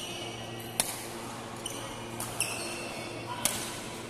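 Badminton rally: three sharp racket-on-shuttlecock hits about a second or more apart, with high squeaks of court shoes on the floor between them.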